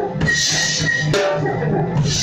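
Rock drum kit played hard, with a cymbal crash just after the start and further strokes on the drums, over music with sustained pitched notes.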